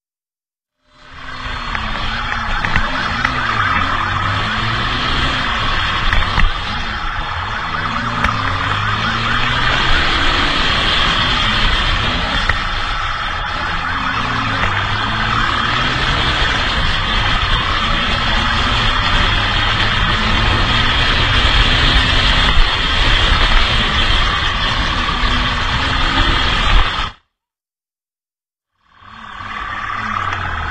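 Motorcycle engines running hard in a night-time pursuit, the revs rising and falling, under heavy wind rush on the bike-mounted microphone. The sound cuts in about a second in and cuts out abruptly about a second before the end.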